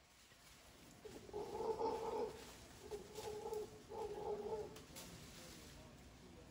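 Mantled howler monkey calling in the trees: three short, low moaning calls, the first and longest about a second in, the others close behind.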